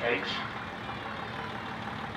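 Foden two-stroke diesel engine of a 1948 Foden half-cab coach running gently at low speed with a steady low rumble, not yet opened up to its characteristic howl.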